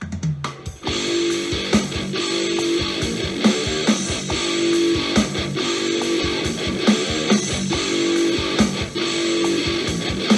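Playback of double-tracked, distorted electric guitar chords run through the Ignite Amps Emissary amp simulator, played over the speakers in the room. The strummed part comes in fully about a second in.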